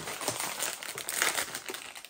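Plastic and cardboard candy packaging crinkling and crackling as it is handled and opened.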